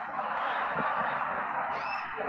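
Steady hiss of background noise from a newly unmuted microphone on a video call, with a faint short rising tone near the end.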